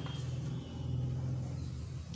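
A steady low rumble, with faint scratching of chalk writing on a blackboard.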